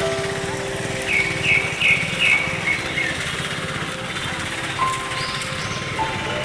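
Busy street ambience with music and voices over traffic noise. From about a second in, a run of six short high-pitched chirps, roughly three a second.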